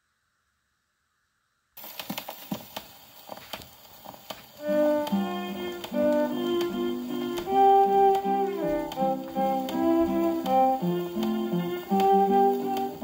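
Acoustic phonograph playing a shellac 78 rpm record: the needle comes down about two seconds in with surface crackle and clicks, and about four and a half seconds in the record's instrumental introduction on fiddle and guitar begins, a sliding fiddle melody over guitar chords.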